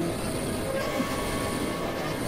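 Experimental electronic noise music: a dense, steady wash of noise across the whole range, with a few short held tones drifting in and out.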